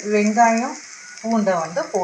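Chopped shallots frying in hot oil with a tempering of dal in a nonstick pan: a steady sizzle.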